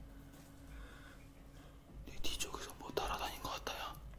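A man whispering a short phrase from about two seconds in, hushed and breathy, as if afraid of being heard.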